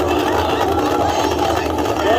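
Steady roar of the Starship's Super Heavy booster engines during ascent, heard from afar, with indistinct voices and chatter mixed in.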